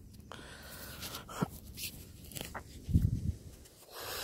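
Faint handling sounds outdoors: a few light clicks and taps, then a dull low thump about three seconds in as an orange plastic marker spike is pushed into the soil.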